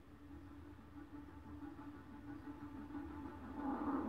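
A movie's opening soundtrack playing through computer speakers: a sustained low tone with overtones that fades in and grows steadily louder.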